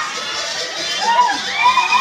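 A crowd of party guests shouting and cheering, with high voices calling out over one another.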